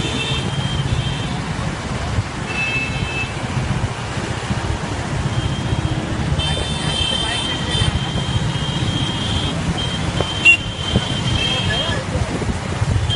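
Road traffic heard from a moving motorbike: a steady low engine and road rumble, with a high steady tone sounding through the second half and a sharp knock near the end.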